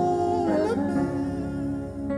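Male voices singing a slow gospel worship song, holding long, slightly wavering notes.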